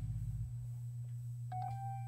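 Organ holding a low chord, with a higher sustained note coming in about a second and a half in.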